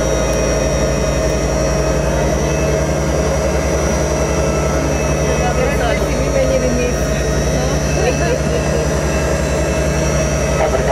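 Yakovlev Yak-40's three Ivchenko AI-25 turbofan engines running steadily at low power as the jet taxis, heard from inside the cabin: a steady whine over a pulsing low drone.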